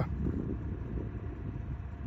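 Wind rumbling on the microphone: an uneven low rumble with no distinct events.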